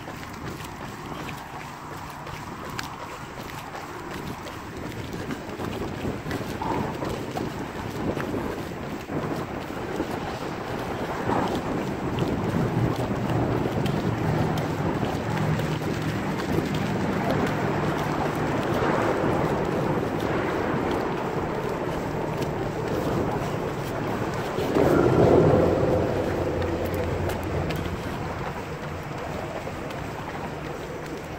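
Wind buffeting the microphone of a camera carried by a runner, with a low rumble and footfalls underneath. It grows louder through the middle and is loudest about 25 seconds in.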